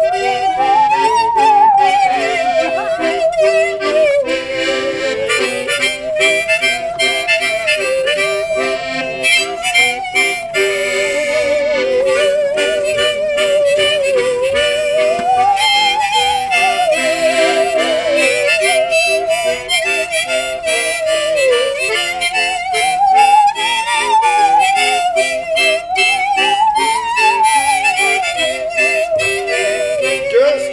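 Instrumental music: a bowed musical saw plays a sliding melody with a fast vibrato over piano accordion chords and a rack-held harmonica.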